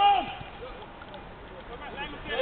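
A single short shout at the very start, its pitch rising and then falling, the loudest sound here; after it only quieter background from the pitch.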